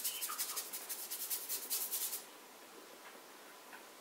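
Paintbrush scrubbed quickly back and forth over an oil-painted canvas, oiling out the surface with medium to bring sunk-in colours back; the rapid strokes stop about two seconds in.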